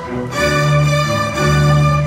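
String ensemble of violins and cellos playing, with long bowed notes over a held low cello line. The sound dips briefly at the start and swells back in about half a second later.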